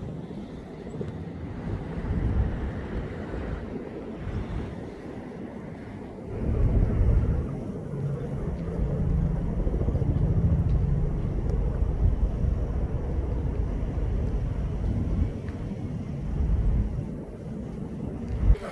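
Outdoor low rumble of wind buffeting the microphone, gusting and growing stronger about six seconds in.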